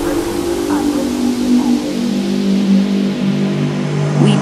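Tech house track in an instrumental breakdown: a held synth tone steps down in pitch across the whole stretch, and the deep kick and bass drop away after about a second.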